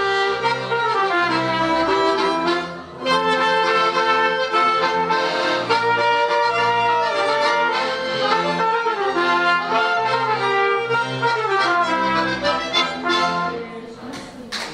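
Folk band playing an instrumental passage with fiddle and double bass. It breaks off briefly about three seconds in, then runs on to the close of the tune near the end.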